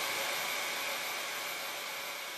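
The closing tail of an electronic dance track: a white-noise wash with no beat, fading slowly away.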